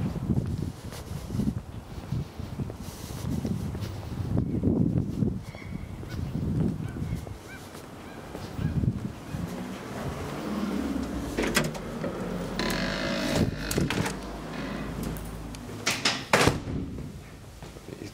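Low rumbling walking and handling noise, then a glass-panelled entrance door being opened and let close, with several sharp clicks of its handle and latch in the later part.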